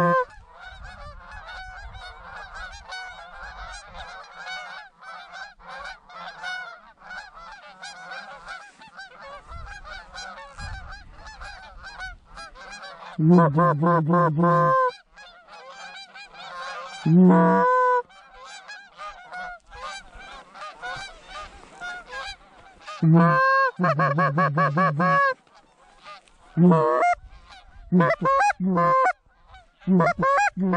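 A flock of Canada geese honking continuously in the air, with loud, close runs of honks from a hand-blown goose call: a long run about a third of the way in, a short one a few seconds later, another past the middle, and several quick short bursts near the end.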